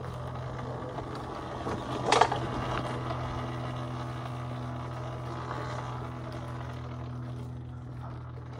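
Talaria Sting MX4 electric dirt bike riding down a dirt trail: a steady low hum under the rough rush of tyres on dirt. A loud burst of noise about two seconds in is the loudest moment.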